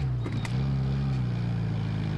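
Engine of the vehicle carrying the camera running at low speed, a steady low hum whose pitch rises and falls slightly. A couple of short clicks come about half a second in.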